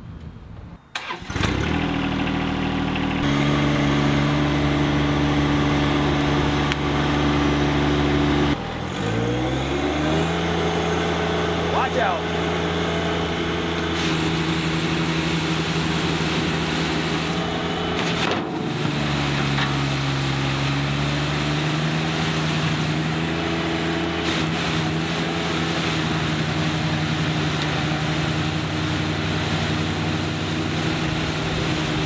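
John Deere 1025R compact tractor's three-cylinder diesel running steadily under load while pulling a Sweep-All PSP sweeper over pavement. The sound comes up suddenly about a second in. Around eight seconds in the engine speed dips, then climbs back up and holds.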